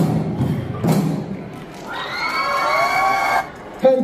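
Large two-headed barrel drums struck twice in the first second, the closing beats of a drum dance, then an audience shouting and cheering for about a second and a half. A man starts speaking over the hall's PA near the end.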